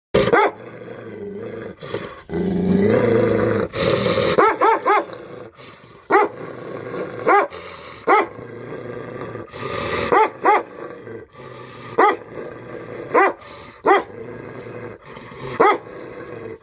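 A small dog growling and barking as it is provoked by a teasing hand in attack training: a low growl for a couple of seconds, then a quick run of about four sharp barks, then single barks every second or two.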